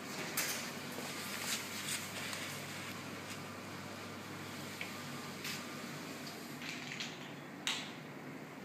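Scattered sharp mechanical clicks and ticks at irregular intervals over a steady background noise, the loudest click just before the end.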